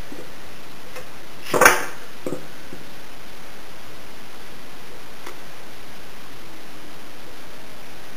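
A metal can of tung oil finish pried open with a flathead screwdriver: one sharp metallic pop as the lid comes free, then a couple of faint clicks, over a steady hiss.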